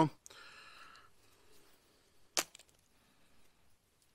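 A brief faint scrape, then one sharp crack about halfway through, from working with a small knife on a wooden stake.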